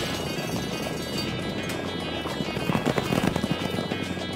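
Cartoon music playing over a rapid clatter of galloping horse hooves, which grows louder in the second half.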